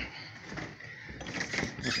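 An interior panel door being opened by its knob: a few soft latch and handling clicks, picking up in the second half, as the door swings open.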